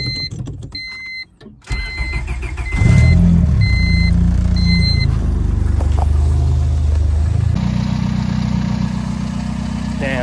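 Honda Civic engine started with the key: the starter cranks briefly and the engine catches about three seconds in, running at a fast idle that settles lower and steadier near the end. A repeating electronic warning chime beeps through the first half.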